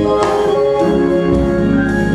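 Organ playing sustained chords that change, with a sharp accent about a quarter second in.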